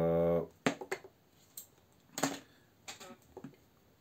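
About half a dozen light, scattered clicks and taps from handling a cordless compressor's rubber air hose and clip-on valve chuck and pressing the buttons on its control panel.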